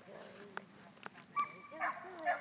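A dog giving a short high whine followed by a loud yip in the second half, with a couple of sharp clicks before.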